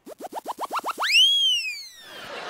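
A comic cartoon sound effect: a quick run of about eight short rising boings, then one long swoop that climbs steeply about halfway through and slides slowly back down.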